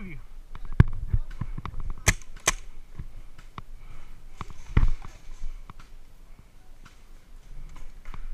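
Scattered sharp pops and clicks from paintball play, with two louder pops about two seconds in and a heavier thump near five seconds.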